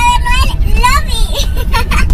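A high-pitched voice talking inside a car cabin, over the steady low rumble of the car's engine and road noise.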